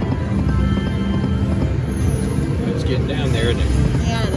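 Eureka Reel Blast video slot machine playing its reel-spin music and sound effects as its reels spin, over casino background noise with voices.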